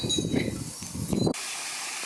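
Low, uneven outdoor rustling noise that stops abruptly a little over a second in, giving way to a steady hiss of light rain.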